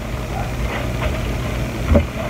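A steady low background hum, with faint soft sounds of paper napkins being handled.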